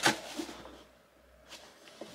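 Cardboard shoe box being handled and turned in the hands: a sharp click at the start, then faint rustles and a couple of light taps near the end, with a nearly quiet stretch in between.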